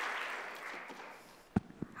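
Audience applause dying away. Near the end a sharp knock and then a fainter click come from the lecturer's headset microphone as she handles it.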